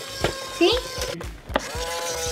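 Battery-powered Tinkers remote-control toy dinosaur working its legs in walking motion, its small motor and gears ticking in a steady rhythm of about two clicks a second.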